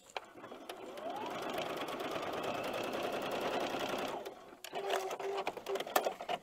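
Electric sewing machine stitching a fabric strip onto a paper foundation, speeding up over the first second, running steadily, then stopping about four seconds in. A few light clicks follow.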